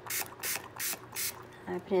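Small pump-spray bottle of Distress Spray Stain ink squirted four times into a plastic cup, each squirt a short hiss, about three a second.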